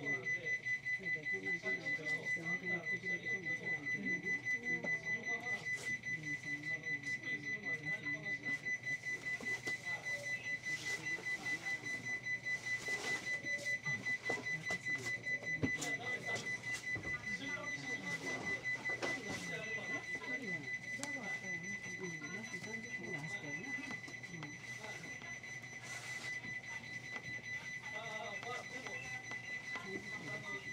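A steady high electronic beep pulsing about four times a second without a break, with muffled voices underneath, in a train standing at a station.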